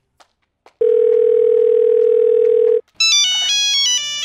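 A phone call connecting: one steady telephone beep about two seconds long, then, about three seconds in, a mobile phone's electronic ringtone melody starts playing.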